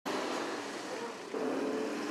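A box truck driving past: steady tyre and engine noise, a little louder from just past halfway.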